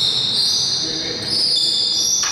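High-pitched squeaking on a wooden basketball court floor: long squeals that shift up and down in pitch in steps.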